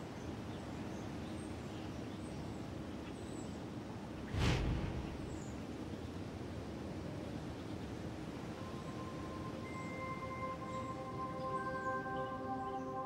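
Quiet ambient documentary score: a soft steady hiss bed, a single deep hit about four seconds in, and held sustained tones fading in over the last few seconds.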